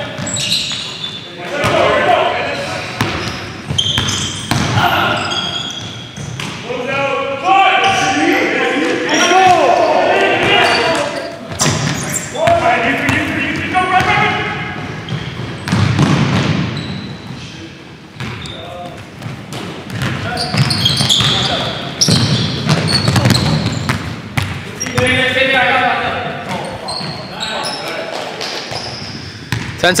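Basketball bouncing repeatedly on a hardwood gym floor, mixed with players' shouts and calls, all echoing in a large gymnasium.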